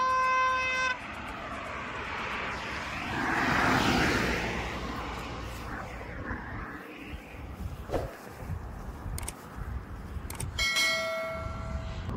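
A short electronic chime in the first second and a second pitched tone about a second before the end, the sound effects of a channel 'subscribe' animation laid over the video. Between them, wind and handling rustle on the phone microphone, loudest around four seconds in.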